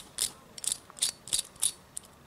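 Small metal clicks and scrapes from a craft scalpel's collet handle as a blade is worked into the collet: about six short, sharp ticks, evenly spaced.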